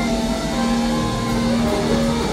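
Live rock band playing, with electric guitars holding long sustained notes over bass and drums.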